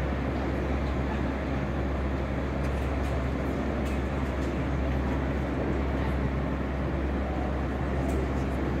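Steady low rumble with an even background noise over it, unchanging throughout, with a few faint ticks.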